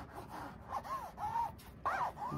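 Fingers rubbing across the textured cover of a hardcover picture book, stripped of its dust jacket: a few short scratchy strokes, each with a small squeak that rises and falls in pitch.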